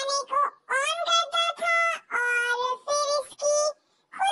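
Speech only: a very high-pitched, childlike voice talking in quick phrases with short pauses, the Hindi voice-over dub.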